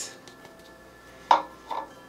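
A single sharp knock about a second and a half in as a small plastic bowl is set down on a granite countertop, followed by a lighter tap; otherwise quiet kitchen room tone.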